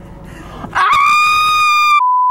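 A loud, high-pitched shriek that starts a little under a second in, rises briefly and then holds steady until the end.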